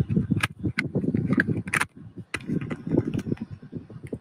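Phone handling noise inside a car: rustling and rubbing with many short, irregular clicks and knocks.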